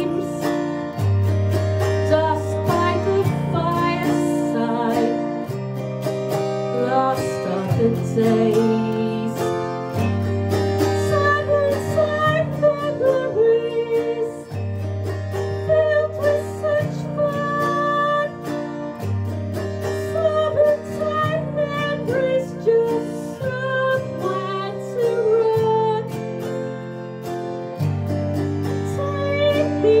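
Autoharp strummed in a steady rhythm, its chords changing every second or two, with a woman's singing voice over it.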